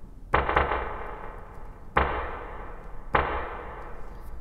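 A short sample triggered three times on an Akai MPC through its Air Spring Reverb effect, set fully wet. Each hit starts sharply and trails off in a spring-reverb tail until the next hit cuts it.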